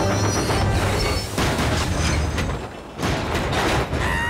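Cartoon crash sound effects: a steam tank engine and its loaded stone trucks smashing into buffer stops, a noisy crashing clatter that dips briefly near three seconds and then comes back, over background music.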